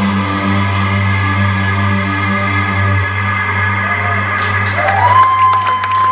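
A live rock band's last chord rings out, held low and steady; near the end a high tone slides up and holds. The crowd starts to cheer and clap over it in the second half.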